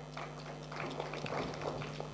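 Faint, scattered clapping from a small audience, over a steady electrical hum from the sound system.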